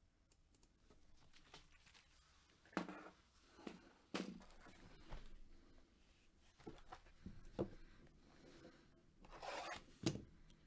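A shrink-wrapped cardboard trading-card box being handled: a series of light knocks and plastic crinkles spread through the middle, and a longer rustling stroke of the plastic wrap near the end.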